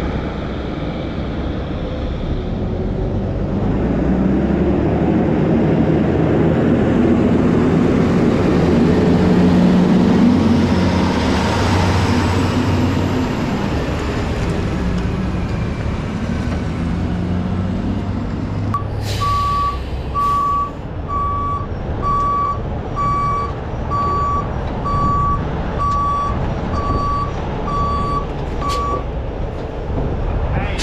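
Heavy-duty wrecker's diesel engine running as the truck manoeuvres, growing louder over the first ten seconds. From about two-thirds of the way in, its reversing beeper sounds about a dozen times, a little under once a second, as it backs up to the trailer. Two short hisses of air come near the start of the beeping.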